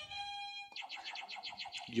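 A plastic sound-effect buzzer button playing a sci-fi phaser zap: an electronic tone held for under a second, then a rapid pulsing at about ten pulses a second.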